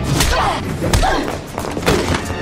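Fight-scene blows: about three heavy thuds of punches and bodies hitting a wall, with women's grunts and gasps of effort between them.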